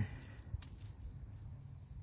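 Faint handling noise from milkweed fibers being twisted by hand into cordage, with one small click about half a second in, over a steady faint high-pitched drone.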